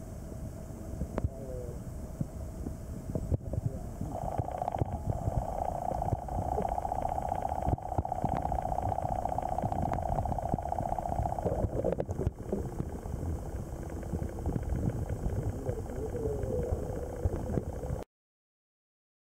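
Low rumbling water noise picked up by a camera held underwater in a shrimp pond, with a steady buzzing hum that comes in about four seconds in and stops about seven seconds later.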